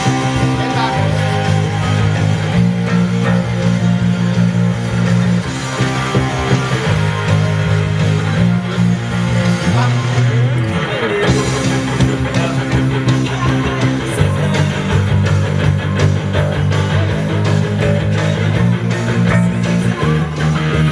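Electric guitar and electric bass playing a rock instrumental together: the guitar plays melody lines high on the neck while the fingerpicked bass holds driving low notes that change every second or two.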